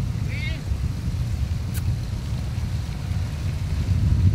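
Steady low rumble of wind and vehicle noise on the microphone of a camera moving alongside a racing cyclist, with a short voice-like sound just after the start and a single sharp click a little before halfway.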